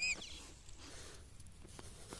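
A small hand digging tool scraping and poking through loose soil in turf, with soft crumbling and small ticks, heard faintly.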